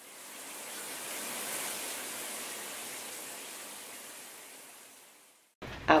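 Shower running: a steady hiss of spraying water that fades in and fades out again shortly before the end.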